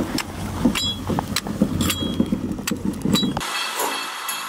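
Metal runners of a single-seat ice dragon boat sled scraping and grinding over snow-covered ice, with scattered sharp clicks. The noise cuts off suddenly about three and a half seconds in, and jingling music begins.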